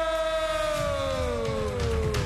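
Start siren sounding for the beginning of a timed round: one long tone that slowly falls in pitch and dies away near the end.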